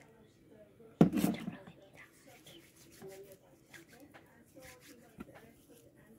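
A sudden loud thump with a short rustle about a second in, handling noise from hands working right at the phone's microphone, then faint small handling sounds and low murmuring.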